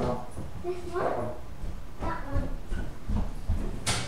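Short wordless vocal sounds, then a single sharp clunk near the end as a laundry machine's lid or door is handled.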